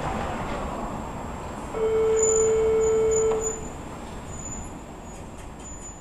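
Steady city traffic rumble with one long horn blast, held for about a second and a half starting about two seconds in. The background then fades down toward the end.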